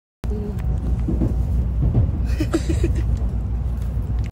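Steady low rumble of a bullet train running, heard inside the passenger carriage, with a few short higher sounds about two and a half seconds in.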